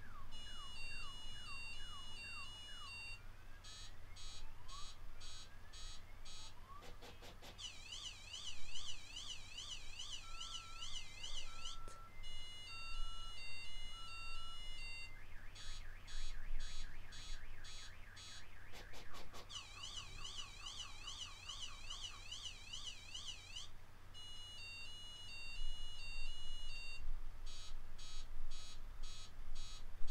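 Car alarm going off after another car crashed into the parked car. It cycles over and over through a rising-and-falling warble, rapid chirping pulses and a stepped run of high beeps, repeating about every twelve seconds.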